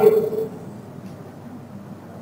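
A man's voice trailing off in the first half second, then a pause with only faint, steady room noise.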